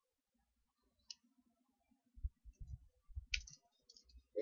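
Faint clicks and soft knocks from typing on a computer keyboard: one click about a second in, then a scattered run of keystrokes from about two seconds on.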